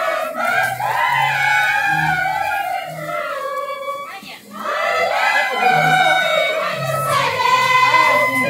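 A group of girls singing a pastoras song together in high voices, with a brief pause about four seconds in before the singing resumes.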